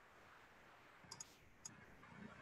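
Near silence broken by three faint clicks of a computer mouse: two close together about a second in, and a third about half a second later.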